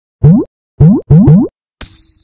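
Logo intro sound effect: four short rising cartoon 'boing' glides, the last two close together, then a bright chime that starts near the end and rings on.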